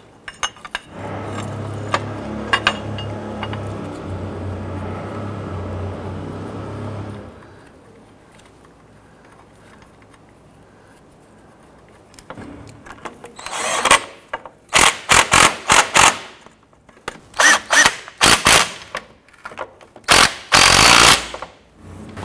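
A power tool runs the engine-mount bracket nuts down with a steady hum for about six seconds. After a pause comes a string of short, loud bursts as the nuts are run tight.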